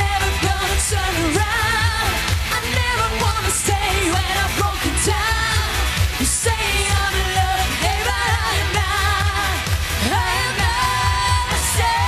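Pop-rock song played by a band: a steady drum and bass beat with keyboards, and a woman singing held notes over it.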